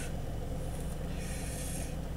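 A man blowing out a drag of cannabis smoke, a soft breathy hiss lasting under a second past the middle, over a steady low hum inside a car.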